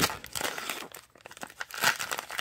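Wrapper of a baseball-card pack being torn open and crinkled by hand: a run of irregular crackles with a louder rip near the end.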